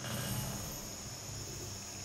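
Steady, high-pitched chirring of insects over faint outdoor background noise. No disc striking the basket's chains is heard.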